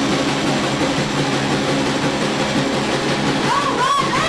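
A punk rock band playing live, with distorted electric guitars and drums blending into a dense, steady wall of sound. A few sliding notes rise and fall near the end.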